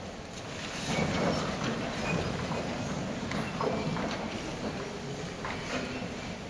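A choir getting to its feet: rustling clothes and folders, shuffling, and scattered knocks of shoes and seats, growing louder about a second in.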